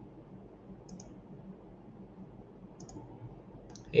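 Three soft computer mouse clicks, about a second in, near three seconds and near the end, over faint room noise.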